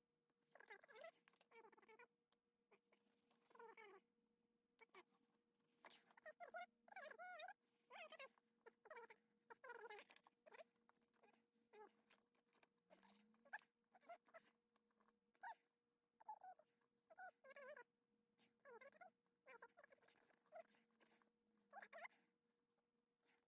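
Faint, repeated short squeaks and creaks as electrical wires are twisted together and a plastic wire nut is screwed on by hand, with a faint steady hum underneath.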